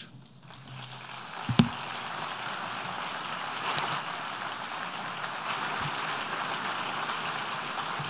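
Delegates applauding, building up over the first second or two and then holding steady. A single sharp knock is heard about a second and a half in.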